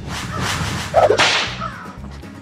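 Whoosh-and-whip-crack transition sound effect: a rushing swish builds, then a sharp, loud crack about a second in that tails off quickly.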